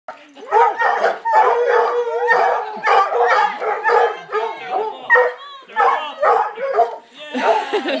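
Several large hounds barking and baying over one another, about two calls a second, as they wait for a ball to be thrown.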